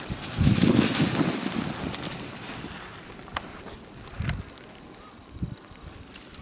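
Wind buffeting the camera microphone: a heavy low rumble in the first couple of seconds that gradually eases, with a couple of faint clicks later on.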